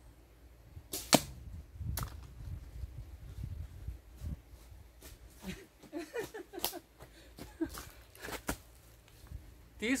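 A shot from a traditional bow: a sharp snap about a second in, then a second sharp knock about a second later as the arrow strikes, clipping the edge of a plastic water-bottle cap. Footsteps on dry leaf litter follow in the second half.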